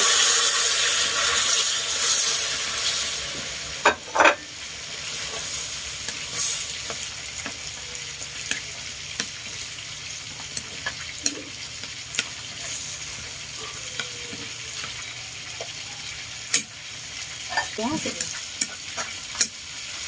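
Pieces of marinated snakehead fish frying in hot oil and caramel in a pan. A loud sizzle as they go in dies down over the first few seconds to a steady frying hiss. Sharp clicks now and then come from chopsticks knocking the pan as the pieces are turned.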